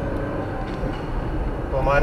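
Steady low rumble of a car driving, engine and road noise heard from inside the cabin; a man's voice starts near the end.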